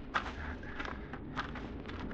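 Sound-effect footsteps of men setting off through forest undergrowth: irregular crunching steps about every half second over a low steady rumble.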